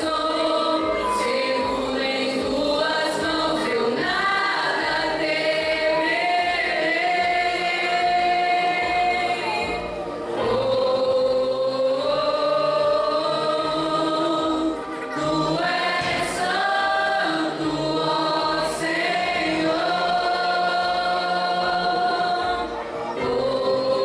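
Young women's choir singing a hymn together through microphones, in long held notes, over a steady low beat.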